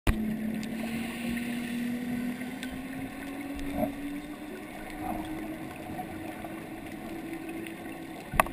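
Boat engine and propeller heard underwater as one steady hum that rises slowly in pitch, over a hiss of water noise, with a few sharp clicks.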